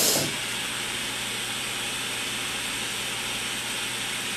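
Butane torch burning with a steady hiss, its flame heating the nail of a dab rig.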